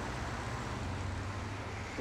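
Steady distant city traffic noise, an even hum with no single event standing out.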